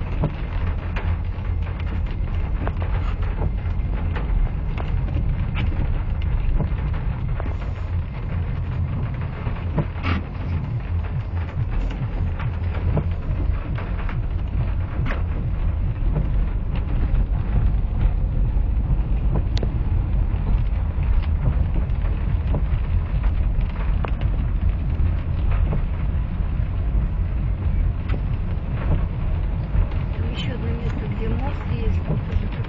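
Cabin noise of a 2004 Subaru Forester XT driving through muddy floodwater: a steady low rumble of the car and water under it, with scattered ticks of rain on the glass and body.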